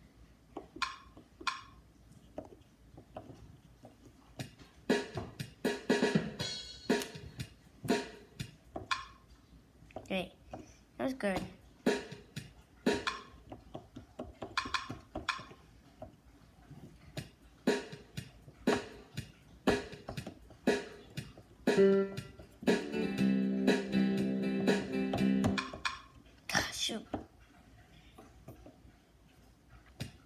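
Electronic keyboard playing a string of separate struck notes, roughly two a second, then a chord held for about three seconds near the end.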